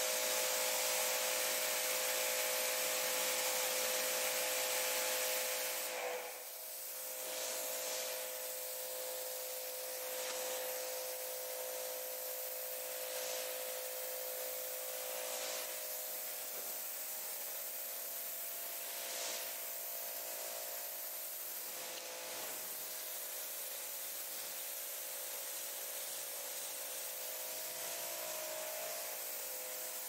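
Pressure washer running, its water jet hissing steadily against a car's wet paint and glass, with a steady hum from the machine under the spray. The hiss swells briefly several times as the jet sweeps across the panels.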